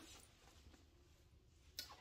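Near silence: faint room tone, with one brief click near the end.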